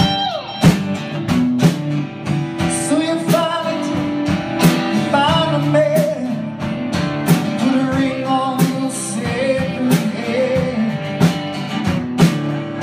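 Live acoustic band music: a man singing over a strummed acoustic guitar, with a second guitar playing along.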